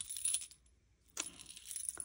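Light metallic clinking of a keychain's metal ring and clasp as it is handled, with a brief silent gap about half a second in.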